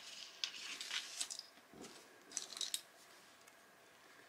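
Acrylic gems and beads clicking and rustling as a hand picks through them in a tray: two short clusters of light, sharp clicks.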